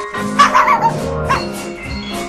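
Small puppy yapping twice, the first yap wavering in pitch, the second short, over light music: the voice of a red knitted-mitten puppy in a stop-motion cartoon.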